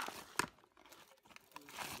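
Puffed rice and chanachur mixed by hand in a plastic basin: dry crunching and rustling, with a sharp click about half a second in and a louder stretch of rustling near the end.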